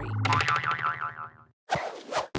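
A cartoon "boing" transition sound effect with a quickly wavering pitch over a low music bed, fading out about a second and a half in, followed by a short gap and a sudden new sound near the end.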